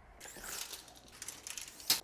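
Retractable tape measure being pulled out and run upward, its blade sliding with a scraping rattle and small clicks, then one sharp click near the end.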